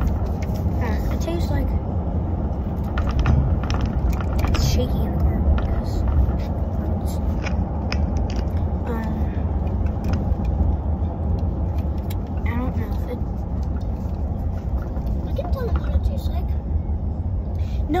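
Steady low rumble of a car on the move, heard from inside the cabin, with scattered small clicks and rustles of something being handled.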